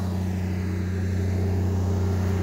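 Honda EB12D diesel generator's Kubota engine running steadily at constant speed, an even low drone with no change in pitch.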